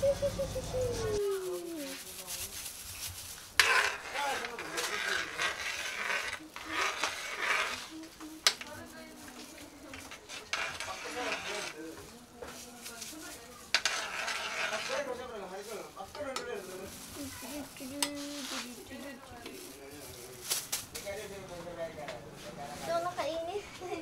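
A utensil stirring and scraping in a metal wok of sweet and sour sauce. It comes in stretches of a few seconds, with a few sharp clinks.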